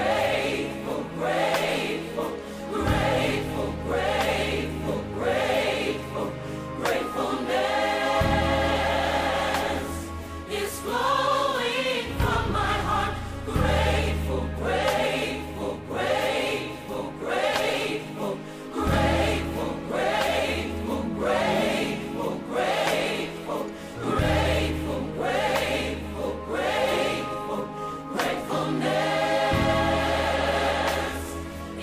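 Gospel choir music: a choir singing over a steady beat and bass line.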